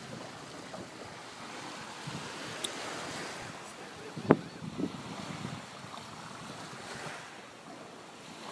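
Small waves lapping on a sandy shore, with wind buffeting the microphone. One sharp knock stands out about four seconds in.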